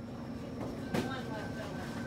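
Grocery store ambience: a steady hum from the refrigerated display cases, with faint voices in the background. There is one sharp knock about a second in.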